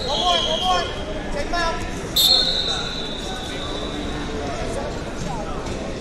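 A referee's whistle gives one long blast about two seconds in, over shouting voices from the mat-side.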